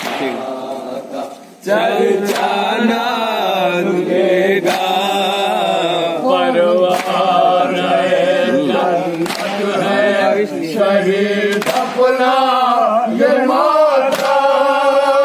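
A group of men chanting an Urdu nauha, a Shia mourning lament, in unison, with long wavering sung lines; the chant drops away briefly near the start, then comes back in full. Sharp slaps on a slow, even beat, about one every two to two and a half seconds, keep time with it: chest-beating (matam).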